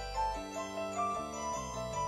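Music: a repeating melody of short notes over a steady bass line.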